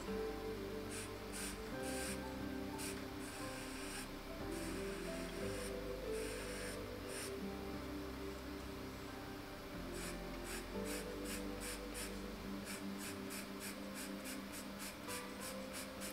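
Pastel pencil scratching on textured paper in short repeated strokes, quicker runs of strokes near the end, laying in hair lines, over quiet background music.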